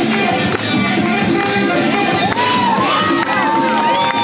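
Music with a steady beat plays loudly for a breakdance routine. From about halfway through, a crowd cheers and whoops over it.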